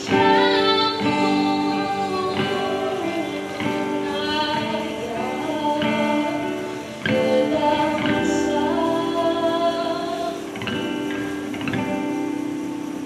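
A solo singer with a strummed acoustic guitar: long held sung notes over chords that change every second or two.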